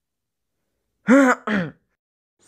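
A man's voice making a short two-part throat-clearing 'ahem' about a second in, each part with a rising-then-falling pitch.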